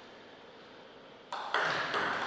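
A table tennis ball struck by a bat and bouncing on the table as a point starts: quiet for a little over a second, then three quick, sharp, ringing clicks.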